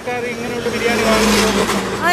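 A motor vehicle passing close by on the road, its engine and tyre noise swelling to a peak about midway and then fading.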